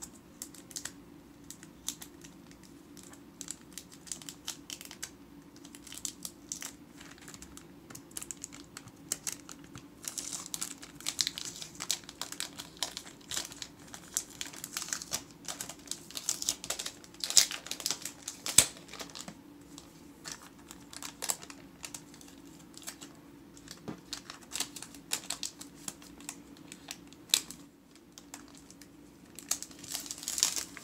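Fingers and fingernails picking at the plastic protective wrap on a laptop: irregular clicks, scratches and plastic crinkles, busiest in the middle with the sharpest clicks a little past halfway. A faint steady low hum runs underneath.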